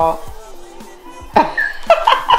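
Background music with voices: a spoken word ends at the start, then after a short lull a brief burst of voice about a second and a half in.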